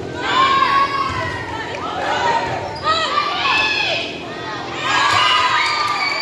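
Several high-pitched girls' voices shouting and cheering in a gym during a volleyball rally, in three bursts of a second or two each. A few sharp smacks of the ball come near the end.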